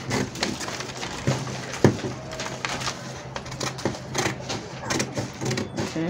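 Scissors cutting through a paper pattern: a run of irregular short snips and paper rustle, with one sharper snip about two seconds in.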